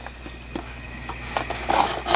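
A pocket knife cutting the packing tape on a cardboard subscription box: faint handling rustles, then a few short scratchy strokes in the second half.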